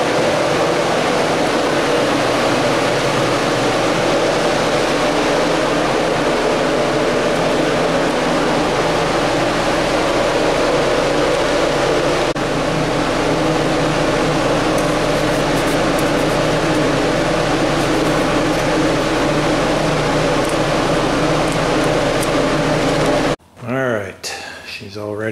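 Paint-booth ventilation fan running with a loud, steady drone that cuts off suddenly near the end.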